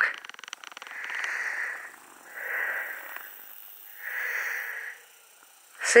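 A person's breathing close to the microphone: three slow, even breaths about a second and a half apart.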